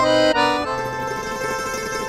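Background score music: three quick chords on a reedy, accordion-like instrument, the last one held and slowly dying away.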